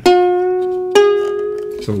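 A freshly strung ukulele string with new fluorocarbon strings, plucked twice while being tuned by ear toward A. Each note rings out and fades slowly, and the second pluck, about a second in, sounds a little higher than the first.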